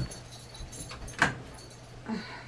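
A lamp switch clicking once, about a second in, with a few faint handling ticks before it.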